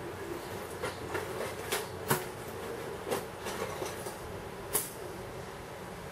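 Hands rummaging inside a backpack: a handful of short rustles and knocks, the loudest about two seconds in, over a steady low background hum.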